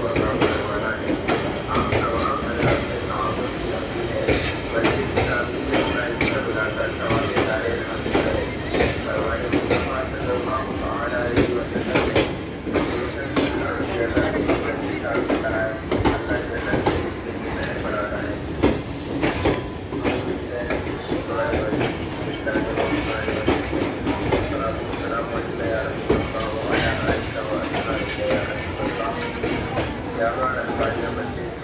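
Passenger train coaches rolling slowly past close by, their wheels clicking and clattering on the track in a steady, dense run of knocks.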